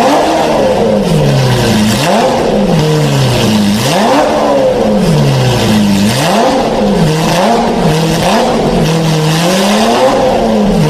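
Lamborghini Murciélago LP640's V12 free-revving through a catless, valved Fi Exhaust system, loud. Repeated throttle blips every one to two seconds, each climbing sharply in pitch and falling back more slowly toward idle.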